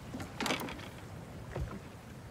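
A wooden rowboat and its oars knocking and shifting as a man moves his weight in it: a short scrape about half a second in, then a low knock about a second and a half in.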